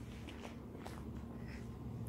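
Quiet outdoor background: a faint steady low hum with a few soft clicks.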